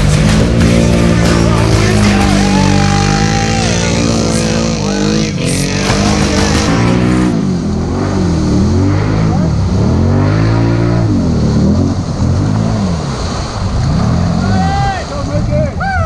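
A Can-Am 570 ATV engine revving hard in repeated surges, pitch rising and falling about every second and a half, as the machine churns through deep mud. Music plays over the first half.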